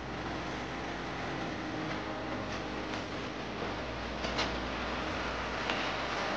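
Steady hum of a room with a fan running, with a few light knocks and clicks as cardboard boxes and packs are handled.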